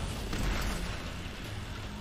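Sound effect from the anime's soundtrack: a steady low rumbling noise without any clear tone, around a soccer ball being struck.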